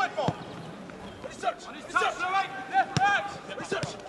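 Footballers' short shouted calls on the pitch, with the ball being kicked: a thud about a third of a second in and a sharper one about three seconds in.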